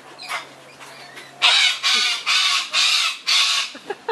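Long-billed corella screeching: a short call just after the start, then, about one and a half seconds in, a quick run of about five harsh, raspy screeches.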